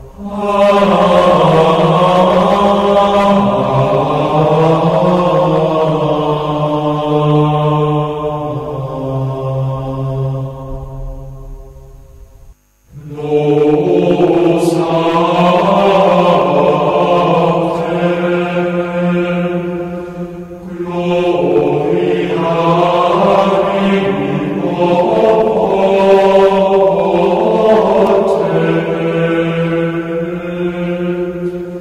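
Devotional chant sung in long, slowly gliding held notes. It breaks off briefly about twelve seconds in, then resumes.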